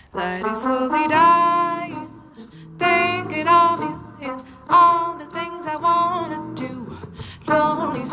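A woman singing a jazz melody in long, held phrases of a second or two with short breaths between, over instrumental accompaniment.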